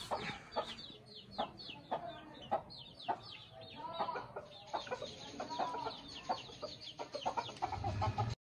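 Chicks peeping over and over in short, high chirps that each slide down in pitch, with a hen clucking lower in the middle stretch.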